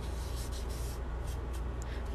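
Tissue rubbing charcoal over drawing paper to blend the shading, a soft scratchy swishing in repeated strokes that fades in the second half. A steady low hum runs underneath.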